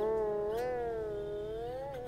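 Siddha veena, a slide-played Indian string instrument, sustaining one note that the slide bends slowly up and back down as it fades, over a steady lower tone.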